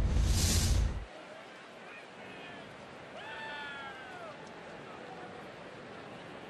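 A TV broadcast transition sound effect: a loud whoosh with a low hit, lasting about a second. Low ballpark crowd noise follows, with a couple of faint, drawn-out calls rising and falling in pitch about two and three seconds in.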